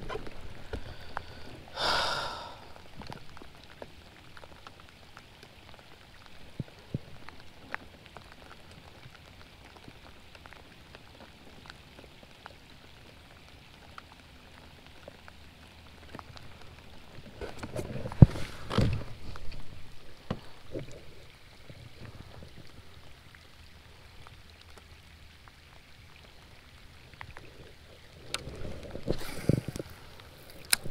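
Light rain falling on the lake and the kayak, a steady faint hiss with scattered drop ticks. A few brief, louder rustles and knocks from gear being handled break in, the loudest about 18 seconds in and again near the end.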